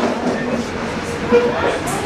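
Crowd chatter: several people talking at once in a room, with no single voice standing out.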